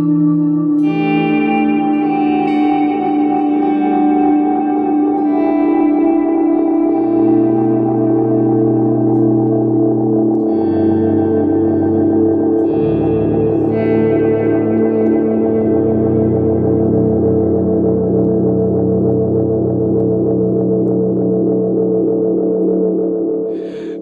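Baritone electric guitar played through stacked delay pedals: slow notes and chords repeat and pile up into a sustained wash, with the low notes changing several times. The Strymon El Capistan tape-style echo has its repeats set high, very close to self-oscillation. The Strymon DIG digital delay, with its repeats down and a shorter decay, adds a wide chorusing effect.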